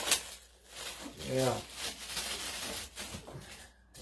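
Hands unpacking a fixed-blade hunting knife from its packaging: a sharp click right at the start, then faint rustling and scraping of the package, with a short spoken "yeah" about a second in.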